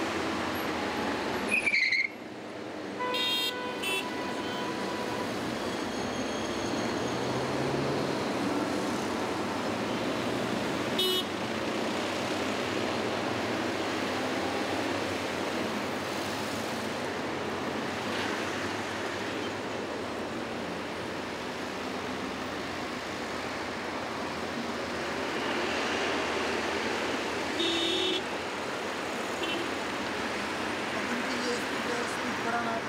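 Steady traffic noise from a busy multi-lane road, cars and vans passing, with short car-horn toots a few seconds in, around ten seconds in, and near the end.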